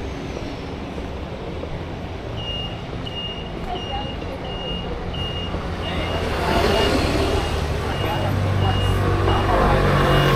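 Road traffic, with a vehicle passing close and growing louder from about six seconds in. About two seconds in, a repeating high electronic beep starts, roughly one and a half beeps a second, like a vehicle's warning alarm.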